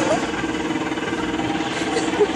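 Busy arcade noise: voices over a steady, pulsing electronic buzz from the game machines, with no punch landing in this stretch.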